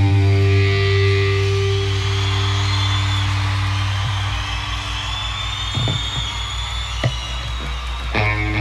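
The last chord of a live punk rock song ringing out on electric guitar and bass through the amplifiers and fading over a few seconds, with a low amplifier hum left underneath. Under it, the concert crowd cheers and whoops.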